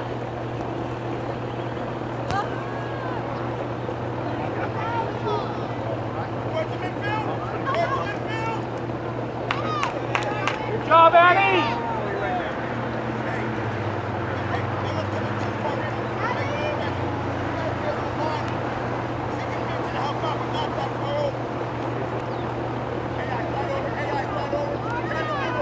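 Scattered shouts and calls from players and spectators across an open soccer field, with one louder shout about eleven seconds in, over a steady low hum.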